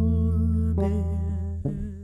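Male voice singing long held notes with vibrato over sustained electric bass notes from a Markbass Kilimanjaro signature bass. The voice and bass move to a new note about three-quarters of a second in and fade near the end.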